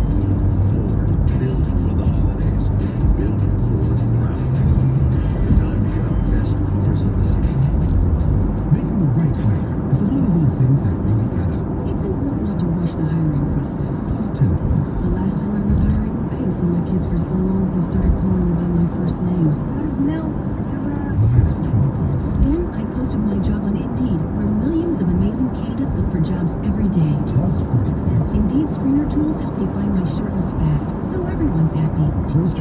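Car radio playing music with a voice, heard inside the car's cabin over the steady tyre and road noise of freeway driving.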